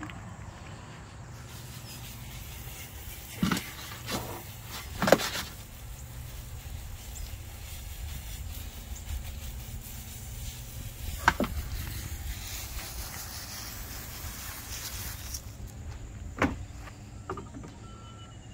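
Steady low outdoor rumble with about five sharp knocks at irregular intervals, the loudest about five seconds in and another about eleven seconds in.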